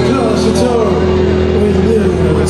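Male lead vocal singing a phrase live over held electric guitar and bass notes, with the drums dropping back to a single cymbal strike before they come in again just after.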